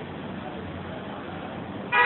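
Faint steady street background, then near the end a vehicle horn starts sounding, a steady tone beginning abruptly.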